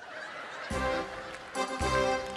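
Electronic stage keyboard striking up a carnival entry march (Einmarsch) about two-thirds of a second in, with two bass beats about a second apart under chords.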